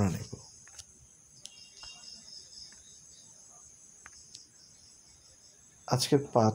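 Faint insect chirping: a pulsing high-pitched trill for a couple of seconds, over steady high tones, with a few soft clicks.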